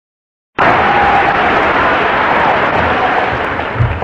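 Large audience applauding, starting abruptly about half a second in and easing slightly.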